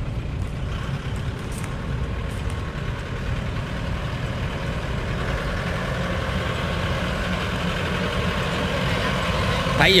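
A light truck's engine running as it drives by, a steady low rumble that grows slowly louder as the truck approaches.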